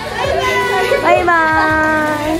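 Several young women's voices calling out goodbye together in long, drawn-out shouts, rising in pitch about halfway and then held, over background music with a steady beat.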